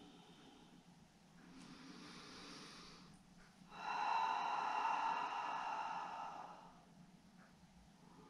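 A woman breathing audibly through a held yoga stretch: a faint inhale about a second and a half in, then a longer, louder exhale from about four seconds in to six and a half.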